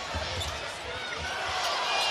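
Basketball being dribbled on a hardwood court under a steady hum of arena crowd noise.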